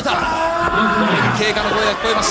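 A long drawn-out vocal cry, an 'ooh'-like held vowel that lasts about a second and a half with its pitch gently sliding.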